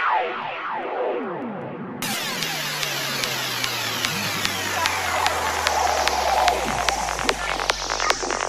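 Intro of a 148 bpm psytrance track: synthesizer effects sweeping down in pitch, opening out to a full, bright sound about two seconds in over a slowly falling bass tone, with rhythmic ticking percussion coming in near the end.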